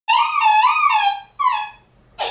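A toddler crying in high, wavering wails: one long wail, then a short one. Crying for no reason in a crash after a sugar high.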